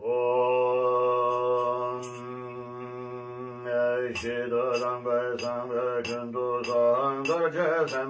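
A man chanting a Tibetan Buddhist liturgy: a long syllable held on one steady low note for about four seconds, then quick syllable-by-syllable recitation.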